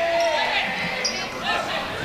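A basketball bouncing on a hardwood gym court, with spectators' voices shouting and one held yell near the start, echoing in a large gymnasium.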